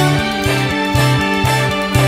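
A progressive rock band playing an instrumental passage live. Electric guitars play over sustained chords and a bass line that moves in even notes, about two a second.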